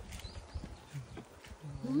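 Mostly quiet outdoor background, then near the end a person starts a low, drawn-out appreciative 'mmm' (うーん) on tasting a piece of ripe mango.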